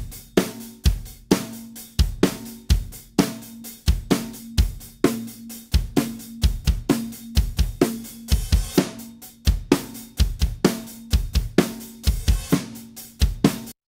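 Multitracked acoustic drum kit playing a steady beat with kick, snare, hi-hat and cymbals, with a sampled acoustic snare layered on the recorded snare hits. About eight seconds in, the snare sample is muted, leaving the original snare recording alone. Playback stops abruptly just before the end.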